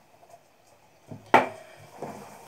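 A single sharp knock on the pottery worktable, with a softer knock just before it, after a second of quiet.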